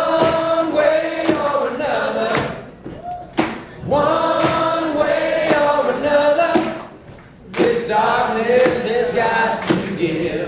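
Live band music: a male voice sings three long, held phrases over an acoustic guitar played flat on the lap and an electric guitar. Sharp percussive knocks fall between the phrases.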